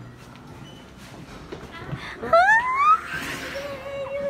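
A woman's excited, rising squeal of greeting about two seconds in, gliding up in pitch, followed by a brief rustling burst against the phone's microphone.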